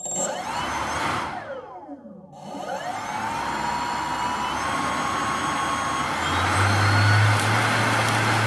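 3D-printed jet engine, a ducted fan spun by a brushless drone motor, whining and blowing air. Its pitch falls as it slows almost to a stop about two seconds in, then rises as it spins back up and runs steady. A low hum joins in near the end.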